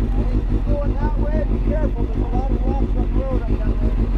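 Suzuki GSX-R750 sport bike's inline-four engine idling steadily, with an even low pulse.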